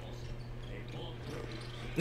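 Faint basketball game broadcast audio, arena sound from the highlights, over a steady low hum.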